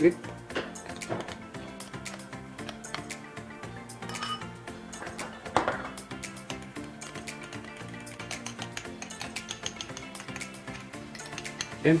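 A metal spoon clinking and scraping against a small bowl and a metal cooking pot as annatto mixture is spooned into a pot of bopis, in a series of short, irregular clinks. Steady background music plays underneath.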